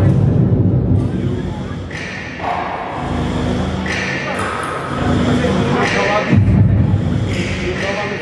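Backing track for a group gymnastics routine playing over a sports hall's loudspeakers, echoing in the hall. It comes in blocks that change abruptly every second or two, with deep booming thuds and voice-like sounds.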